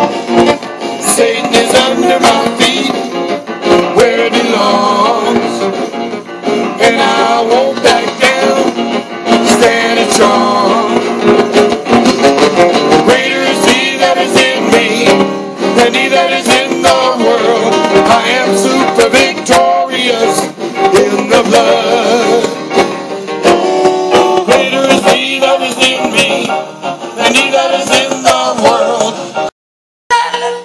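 Live gospel music: a choir and soloist singing over band accompaniment, with sharp beats of clapping or percussion running through.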